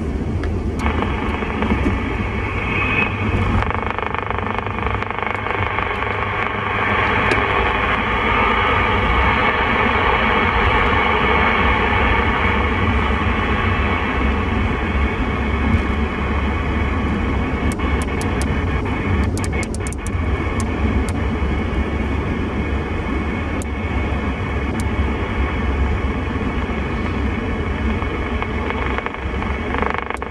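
CB radio receiver in upper-sideband mode giving a steady hiss of band static, with no station coming through and a few faint clicks about two-thirds of the way in, over the low rumble of the car on the road. The operator puts the empty band down to propagation having dropped.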